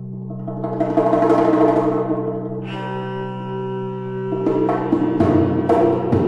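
Instrumental early-music ensemble playing over a steady low drone; pitched notes swell in about a second in, and from about four seconds in drum strikes join with a regular beat.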